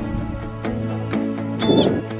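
Background guitar music, with a single short, high animal call near the end.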